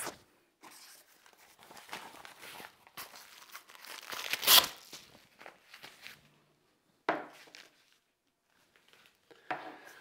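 Fabric upper-arm blood pressure cuff being wrapped around the arm and fastened: irregular rustling and crinkling of cloth, with a louder rasping burst about four and a half seconds in and a short rustle again about seven seconds in.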